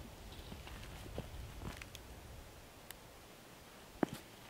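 Faint rustling and soft footsteps on dry leaf litter, with a few light scattered clicks.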